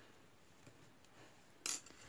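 Quiet handling of crochet work: a few faint light clicks of a metal crochet hook and yarn, then a brief hiss near the end.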